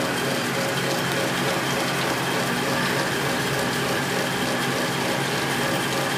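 Air compressor motor running with a steady, even hum.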